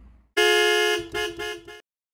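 Horn-like sound effect: one long honk followed by two short honks.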